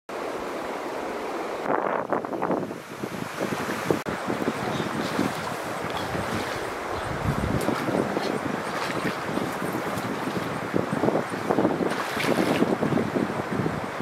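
Shallow stream water running steadily over gravel, a continuous rushing with louder swells about two seconds in and again near the end.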